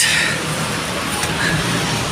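Steady road traffic noise from the street alongside, an even rushing hum with no single event standing out.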